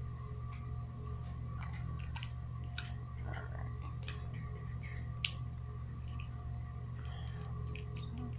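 Scattered light clicks and taps of a new e-liquid bottle and a vape tank being handled, with one sharper click about five seconds in, over a steady low room hum with faint whining tones.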